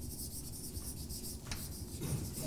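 Chalk writing on a blackboard: a faint, continuous scratching of chalk on slate with a sharper tap about one and a half seconds in.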